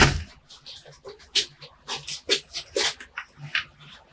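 A bonsai pot set down on a workbench with a loud thump, followed by about half a dozen short scrapes and knocks as the pot is shifted and turned on its stand.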